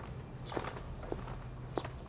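Footsteps of a person walking at an even pace across tiled paving, one sharp step a little more than every half second.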